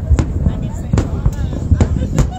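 Aerial fireworks bursting: a quick series of sharp bangs, about four in two seconds, over a low rumble.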